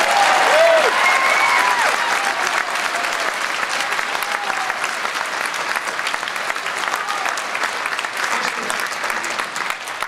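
Audience applauding and cheering, with whoops and shouts in the first couple of seconds; the clapping then carries on and slowly eases off.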